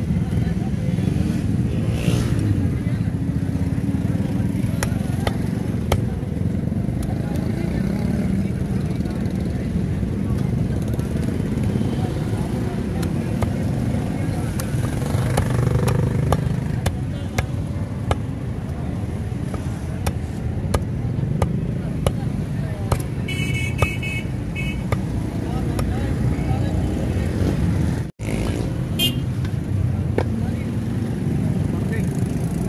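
A cleaver chopping a rohu fish on a wooden log chopping block: sharp knocks every few seconds over a steady low rumble, with a short horn toot about three-quarters of the way through.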